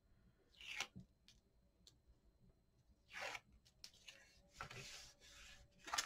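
Faint rustling and rubbing of cardstock being folded over and smoothed down by hand: three soft swishes, the last one longer near the end, with a couple of small ticks.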